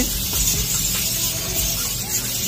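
Compressed air hissing steadily through the venturi of a coolant vacuum refill tool as it draws a vacuum on the car's cooling system.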